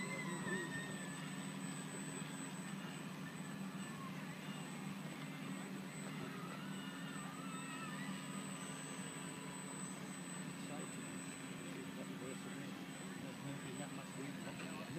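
Radio-controlled speedboat's brushless electric motor running out on the water, a steady hum with a thin high whine.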